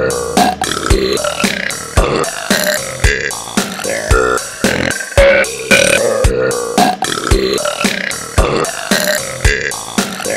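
Many girls' burps, sampled and cut to the beat of an electronic disco-style backing track, with a drum hit about once a second.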